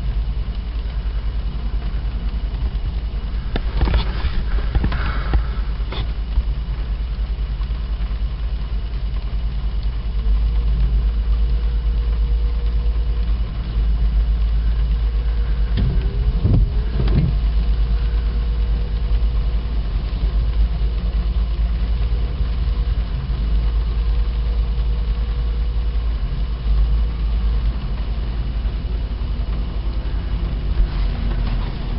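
Car engine idling, heard from inside the cabin as a steady low rumble. There are a few sharp knocks about four to six seconds in, and a windshield wiper sweeps across the glass about sixteen seconds in.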